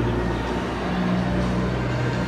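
Busy exhibition-hall ambience: loud, steady low bass notes from background music over a general hall hubbub.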